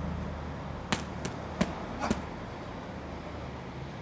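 Boxing gloves punching GroupX kick pads, hand-held focus-style strike pads: a quick combination of about five sharp smacks between one and two seconds in.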